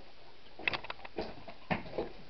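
Footsteps on a debris-strewn floor: a quick cluster of sharp clicks and crunches about half a second in, then single knocking steps roughly every half second.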